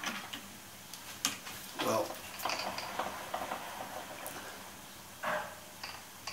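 Small metallic clicks and ticks of a chuck key turning in a four-jaw lathe chuck as the jaws are tightened back onto a steel bar. There are a few sharp clicks in the first second and a half, then fainter scattered ticks.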